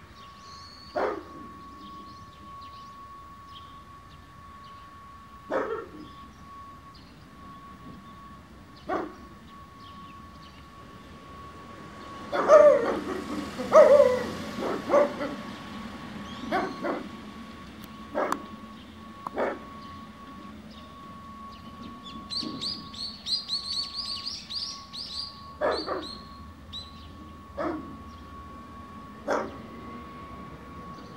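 Dogs barking in single short barks a few seconds apart, with a quick flurry of barks around the middle.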